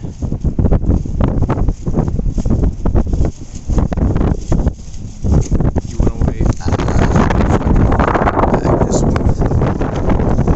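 Wind buffeting the microphone in loud, uneven gusts.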